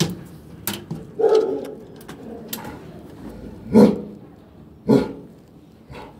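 A dog barking in a kennel, three separate barks with pauses of about a second or more between them, mixed with knocks and rubbing from a handheld phone.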